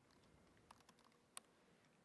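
Faint keystrokes on a MacBook Pro laptop keyboard over near silence: a few scattered key clicks, with one sharper click about a second and a half in.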